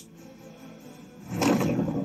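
Anime episode soundtrack playing: a quiet stretch of background music, then about a second and a half in a loud, low, rough sound effect swells in.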